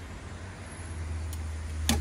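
A small dog's paws knocking once on a car's door sill near the end as it jumps up into the back seat, over a low, steady vehicle engine hum that grows a little louder from about a second in.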